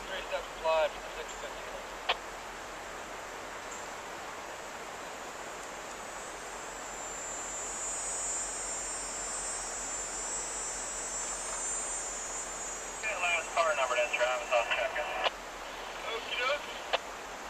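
Loaded coal hopper cars rolling past on the rails, a steady rushing wheel-on-rail noise. A high, thin hiss swells in the middle and fades again.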